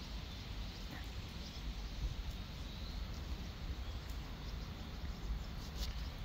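Steady outdoor riverside ambience: a faint, even hiss with a low rumble underneath and a few faint ticks.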